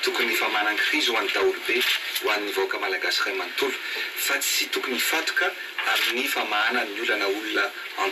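A man speaking steadily, his voice thin and without bass.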